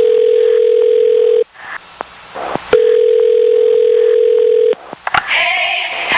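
Telephone ringing tone: one steady pitch held for about two seconds, silent for a little over a second, then held for about two seconds again. Music with singing starts near the end.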